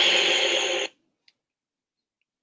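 A short hissy sound effect with a few steady tones held under it, cutting off abruptly about a second in, followed by near silence with a faint click.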